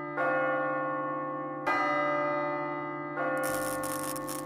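A large bell struck three times, about a second and a half apart, each stroke ringing on and slowly fading. Near the end a rough hiss sets in over the ringing.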